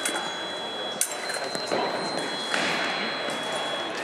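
Fencing hall ambience: thin, high, steady electronic tones from scoring machines sound and overlap, with a sharp click about a second in and chatter echoing around the hall.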